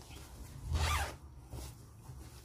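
A zipper on a stitching project bag pulled once: a short rasp with a rising pitch about a second in.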